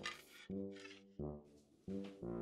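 Background music of brass instruments playing a short phrase of separate held notes, with a new note about every three-quarters of a second.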